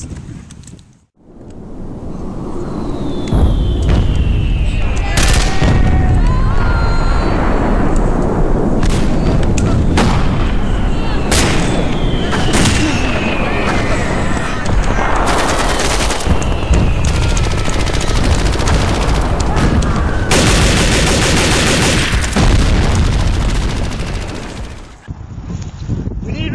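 Battle sound of gunfire: rapid shots and bursts with booms, joined now and then by falling whistles. It builds over the first few seconds into a dense, steady din and fades near the end.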